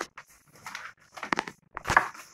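A sheet of crepe paper rustling and crinkling in a few short bursts as it is picked up and handled, with a sharp click near the end.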